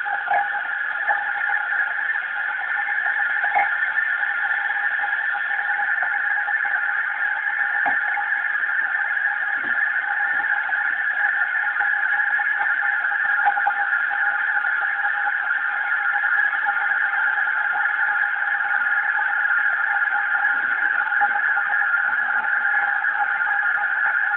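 A loud, steady, high-pitched drone that holds the same pitch and level throughout, with a few faint clicks over it.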